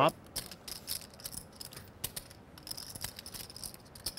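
Poker chips clicking in irregular small taps as players handle and riffle them at the table.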